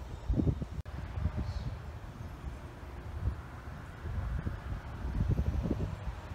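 Wind buffeting a phone microphone outdoors: an uneven low rumble that comes and goes in gusts, strongest about half a second in and again near the end.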